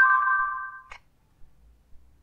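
Android phone's electronic chime as voice input stops and the spoken command is taken for processing: a few quick notes, then a bright tone held for about a second that cuts off abruptly.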